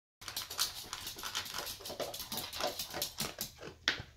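Basset hound eating from a bowl: quick crunching and chewing, several sharp crunches a second, starting abruptly a moment in.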